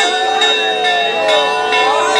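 A metal bell rung over and over, about two strokes a second, its ringing tones hanging on between strokes, with a crowd's voices rising and falling underneath.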